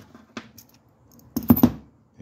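A few short clicks and knocks of a steel wheel bearing being handled on a rubber mat: one faint click, then a quick cluster of three or four sharper knocks about a second and a half in.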